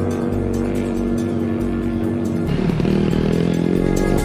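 Background music with a small ATV engine running under it; in the last second and a half the engine's pitch swings up and down as the throttle is worked.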